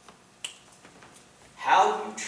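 A single short, sharp click about half a second in, then a man's voice breaking in loudly near the end.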